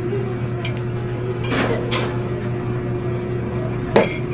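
A spoon in a glass mug, handled and then set down on a table with one sharp knock near the end, over a steady low hum.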